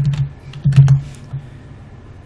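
A few quick keystrokes on a computer keyboard, clicking with low thuds, the loudest just under a second in.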